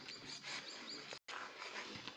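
Soft noise of a spoon stirring thick plantain batter in a plastic bowl, with a quick series of faint high chirps from a small bird in the background during the first half.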